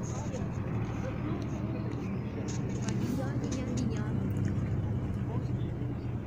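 A steady low engine hum under indistinct talking from people close by.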